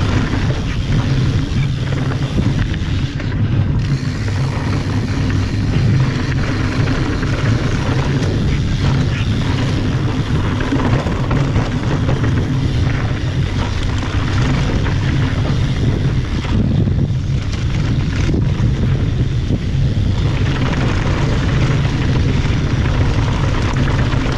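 A steady low rumble of wind on the camera microphone mixed with mountain bike tyres rolling at speed over a dry dirt trail.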